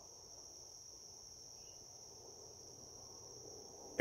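Crickets chirring: a faint, steady, high-pitched drone.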